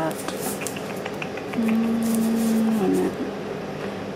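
Light clicks and scrapes of a metal soup can being turned over in the hand, followed in the middle by a woman's long hummed 'mmm' while she reads the label.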